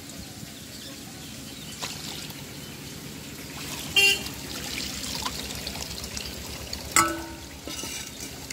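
Water sloshing and trickling as shing (stinging catfish) fry are scooped from a holding tank and poured between plastic bowls, over a low rhythmic hum. Two short, loud horn toots cut in about four and seven seconds in.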